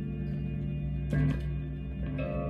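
Electric guitar playing a slow, sustained ambient passage: low notes held and ringing on, with a fresh note plucked about a second in.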